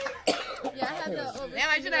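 A man coughing after holding in a lungful of cannabis smoke, amid voices and laughter.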